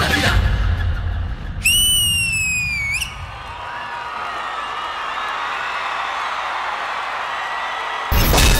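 The dance music stops about a second in. A loud, shrill whistle follows, held about a second and a half, sliding slightly down and then flicking up as it ends. Steady audience applause and cheering run through the rest.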